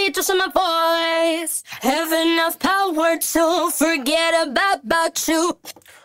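A solo sung vocal track with no accompaniment: one singing voice holding and bending notes, with short gaps between phrases. It stops shortly before the end.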